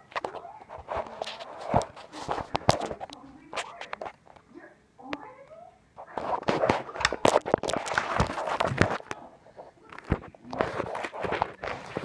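Hands handling a computer mouse and its plastic packaging: irregular clicks, crackles and rustling, with a quieter spell midway, plus knocks from handling the phone.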